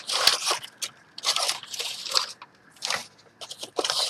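Crumpled brown kraft packing paper crackling and rustling as hands dig through it in a cardboard box, in about five separate bursts.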